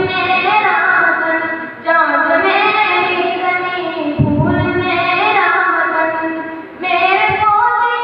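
A boy singing an Urdu patriotic song solo into a microphone, in long held phrases with short pauses for breath about two seconds in and again near the end.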